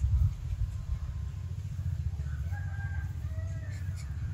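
A rooster crowing faintly in the background, a drawn-out call starting about two seconds in, over a steady low rumble.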